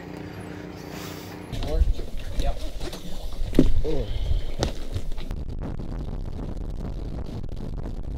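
Ski boat under way on a lake: its engine and the wind on the microphone make a steady low rumble, with a few short snatches of voices in the first half. It opens with a low steady hum before the rumble comes in, about a second and a half in.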